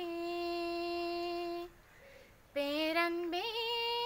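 A young woman singing unaccompanied, holding one long steady note, breaking off for a breath about halfway, then starting a new phrase that climbs to a higher held note.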